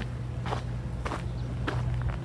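A person's footsteps on a sandy dirt path, three steps a little over half a second apart, over a steady low hum.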